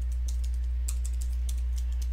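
Typing on a computer keyboard: a run of quick, uneven key clicks. A steady low hum runs under the clicks.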